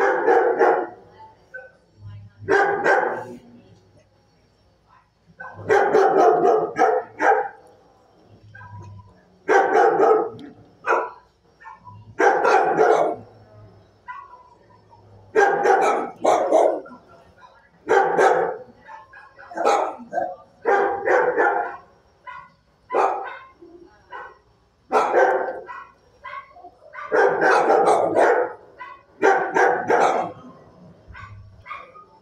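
Dog barking in repeated bouts of several sharp barks, a cluster every two to three seconds.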